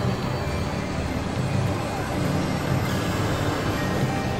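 Experimental electronic drone-noise music from synthesizers: a dense, steady low drone under a wash of noise.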